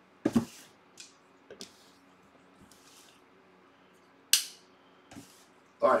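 About six short, sharp clicks and taps of something being handled, the loudest about four seconds in, over a faint steady low hum.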